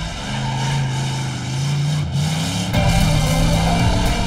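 Motorcycle engine accelerating, its pitch climbing in steps about two and three seconds in, with background music.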